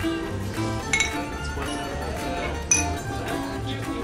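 Drinking glasses clinked together in a toast, two bright ringing clinks about a second in and near three seconds in, over background music with plucked strings and a steady bass line.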